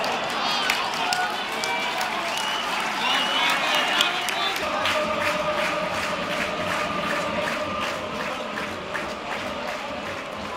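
Football stadium crowd heard from the stands: nearby spectators talking over general crowd noise, with steady rhythmic clapping. A single steady held tone comes in about halfway and carries on.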